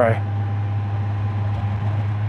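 Steady riding noise of a 2019 Honda Gold Wing Tour's flat-six at a constant speed: an even low hum mixed with wind and road rush, heard from the rider's helmet.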